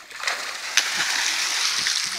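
A person leaping up and falling back into waist-deep lake water with a big splash, then the water churning and sloshing for the rest of the moment.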